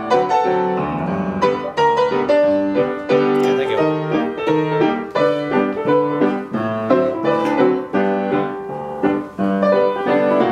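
Solo upright piano playing a ragtime piece, notes struck in a brisk, steady rhythm without a pause.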